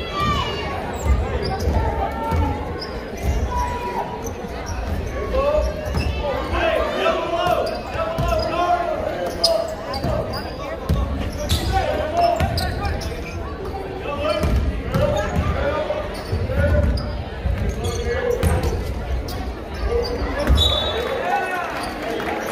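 Basketball dribbled on a hardwood gym floor, with repeated thuds, under continuous crowd chatter and shouts, echoing in the gymnasium.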